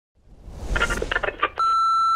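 Channel-logo intro sting: a rising whoosh and a quick run of stuttering electronic hits, then a steady high beep that starts near the end and holds.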